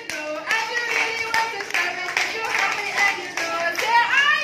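A group of young children clapping their hands repeatedly while singing along together.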